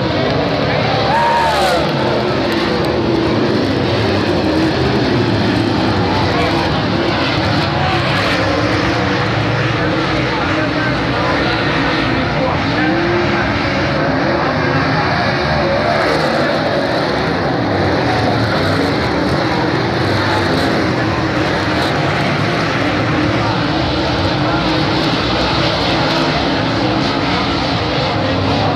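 Dirt late model race cars' V8 engines at racing speed, a continuous din of several engines with pitches rising and falling as they rev and pass.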